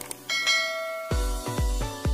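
A click, then a bright bell-like ding from a subscribe-button notification-bell sound effect that rings out and fades within about a second. Electronic dance music with a heavy bass beat, about two beats a second, then starts.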